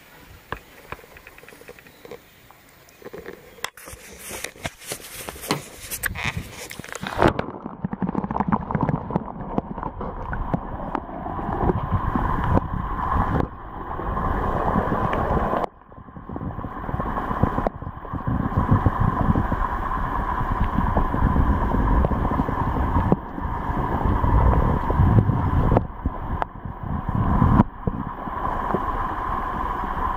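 Water rushing and splashing around a camera as it is pushed under the surface, about four seconds in, then a muffled underwater rumble and gurgle with the high sounds cut off, as heard by a camera held below the surface of shallow lake water.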